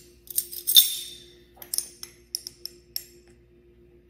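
Metal measuring spoons on a ring clinking together as one is picked out, with the loudest, ringing clink about a second in. A few lighter clicks and taps follow as a spoon is dipped into the spice jar and the glass jar.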